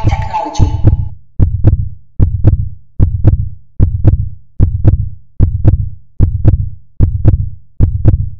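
Logo-sting sound effect: a brief shimmering tonal swell at the start, then a deep double thump like a heartbeat repeating steadily, about one pair every 0.8 seconds. Each thump has a sharp click on top.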